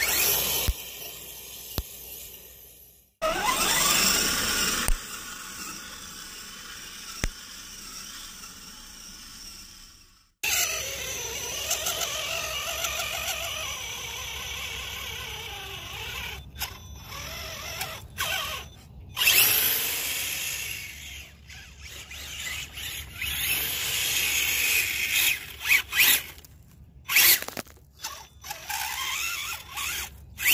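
Electric motor and geared drivetrain of a radio-controlled scale truck whining, rising and falling in pitch with the throttle. The sound breaks off suddenly several times and starts again.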